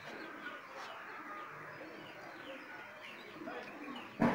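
Faint background birdsong: many small, quick chirps scattered throughout over a low ambient hiss.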